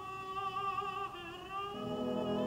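Live opera recording: a singer holds long notes with a wide vibrato over a soft orchestra. Fuller, lower orchestral chords come in near the end.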